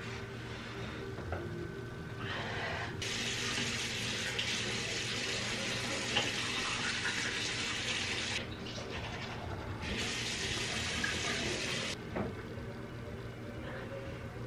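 Bathroom sink tap running into the basin. The sound of the water gets louder about three seconds in, drops back around eight seconds, rises again near ten seconds and falls away around twelve seconds, with a steady low hum underneath.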